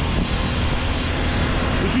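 A Revolt Volta RS7 125cc GY6 scooter running at low speed, its engine under steady wind noise on the microphone, with a second scooter riding alongside.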